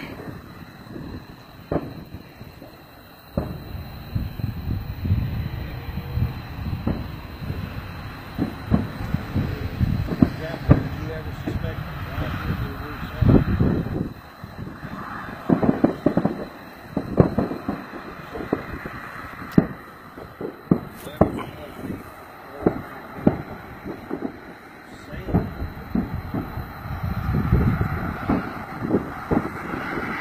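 Fireworks display bursting far off: irregular bangs and cracks, coming in flurries of several a second at times, with a low rumble between them.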